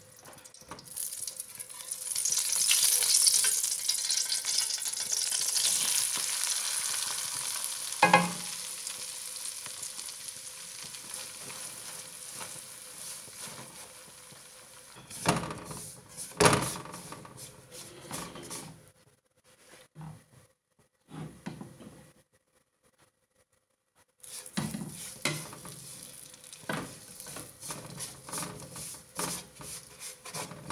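Ghee sizzling as it melts in a hot aluminium kadai, loudest in the first few seconds and then fading, with a single knock partway through. Later, semolina and gram flour go into the pan with a clatter, and a silicone spatula scrapes and stirs them as they roast in the ghee.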